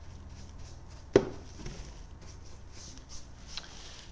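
Faint, soft scratchy strokes of a paintbrush working paint onto a wooden table leg, with one short sharp tap about a second in.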